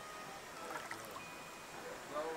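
Water lapping and trickling around a camera held at the surface by a swimmer in a rock pool: a soft, steady wash of small ripples.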